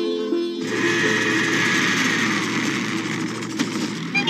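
Film soundtrack music: a sitar phrase breaks off abruptly under a second in and gives way to a steady, dense rushing noise, with one sharp click near the end.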